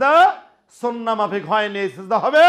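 A man preaching in a raised voice, phrases with rising and falling pitch, and a brief pause about half a second in.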